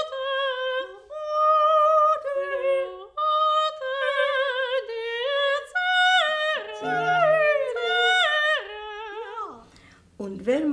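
A woman singing operatic soprano phrases in a classical style, held high notes with wide vibrato, broken by short breaths. In the last few seconds the line steps downward in pitch and fades out.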